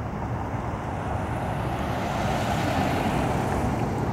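Road traffic: a vehicle passing by, its tyre and engine noise swelling to its loudest near the middle and easing off towards the end.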